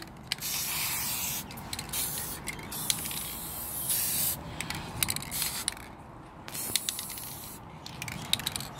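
Aerosol spray can hissing in several bursts of about a second each, with short breaks between them, as a coat is sprayed onto a painted wooden coat rack.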